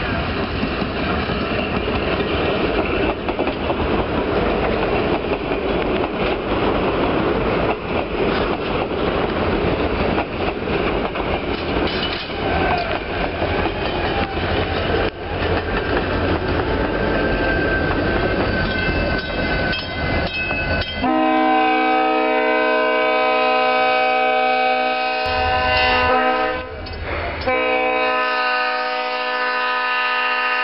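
Heavyweight passenger cars rolling past close by, a steady rush with scattered clatter from the wheels on the rails. About two-thirds of the way in the sound changes abruptly to an EMD SD40-2 diesel locomotive's air horn sounding a chord of several tones, in two long blasts with a short break between them.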